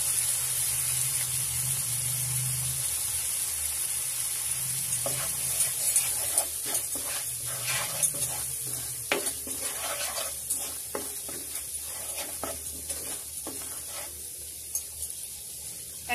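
Spice paste sizzling in oil in a nonstick frying pan. From about five seconds in, a spatula stirs it with a run of short scraping strokes against the pan. The sizzle slowly dies down.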